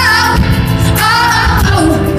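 Live pop music: a female lead vocalist singing into a microphone with a full band backing her.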